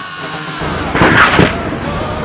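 A loud blast sound effect about a second in, lasting about half a second, laid over rock music.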